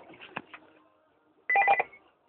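BlackBerry mobile phone ringing with an incoming call: a short, loud burst of electronic ringtone about one and a half seconds in, after a few faint handling clicks.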